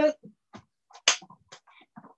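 A person doing a fast bodyweight drill barefoot on a mat: short, sharp breathy puffs and light bumps, with the loudest, hissing burst about a second in.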